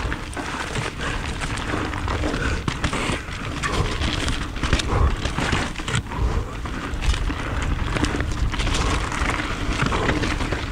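Mountain bike ridden fast down a rocky trail, heard from a rider-mounted action camera: tyres rumbling and rattling over rocks, with frequent clattering knocks from the bike and a steady low rumble on the microphone.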